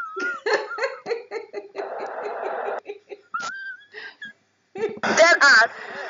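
A woman laughing hard in repeated bursts, with a breathy stretch about two seconds in and louder, high-pitched laughter near the end.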